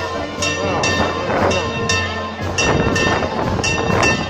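Church bells pealing in quick, uneven strokes, each stroke ringing on at the same fixed pitches, over a crowd's shouting and cheering.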